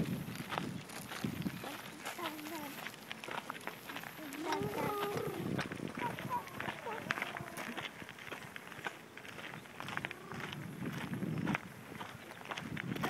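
Footsteps and small bike tyres crunching on gravel, a rapid, irregular patter of crunches as a child pushes a balance bike along. A voice without clear words comes in twice, about four seconds in and again near the end.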